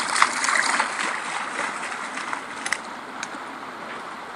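Newfoundland puppy splashing through shallow snowmelt water, loudest in the first second or so and easing off as it moves away, over a steady rush of running runoff water.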